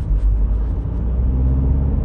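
Steady low rumble of a car driving, heard from inside the cabin: road and engine noise.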